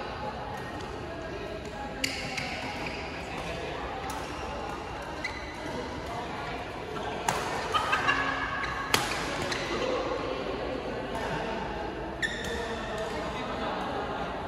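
Badminton rackets striking a shuttlecock in a doubles rally, sharp smacks a second or two apart with a quick run of hits about seven to nine seconds in, echoing in a large hall.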